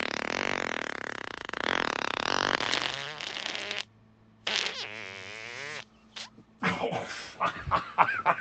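Human farts: a long, fluttering fart that ends about four seconds in. After a short pause comes a second, higher, wavering one lasting over a second. More broken sounds follow near the end.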